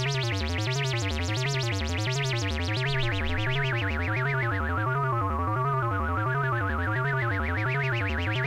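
Buzzy modular synthesizer tone through an MS-20-style filter. Its pitch glides up and down smoothly about twice a second under a triangle-wave LFO. Midway the tone darkens as the filter is swept down by hand, then brightens again near the end.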